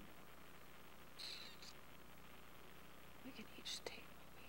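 Near silence: room tone with a low steady hum, a few faint brief hissing sounds and a soft click near the end.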